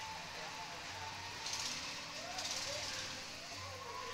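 Steady low background hum with a brief hiss about a second and a half in, and a faint distant voice.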